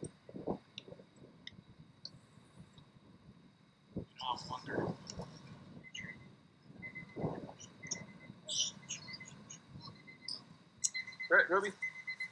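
Brief spells of faint talking voices over quiet outdoor ambience, with a few soft clicks and short high chirps in between; a single word is spoken clearly near the end.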